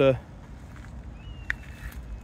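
Footsteps on loose gravel, faint and uneven, with one sharp click about one and a half seconds in.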